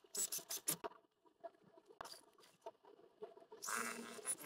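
Quiet handling of a quilted fabric towel topper: a quick run of light taps and rustles in the first second, a few scattered ticks, then a brief rustle near the end.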